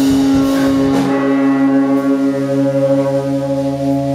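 Live rock band's amplified electric guitars: the full band with drums plays into the start, then about a second in the drums stop and a single sustained guitar tone is left ringing through the amplifiers, steady with a slight wavering.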